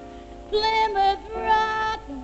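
A female jazz vocalist singing with a small jazz combo of piano, double bass and drums. A soft gap at the start, then her voice comes in about half a second in with a run of held notes.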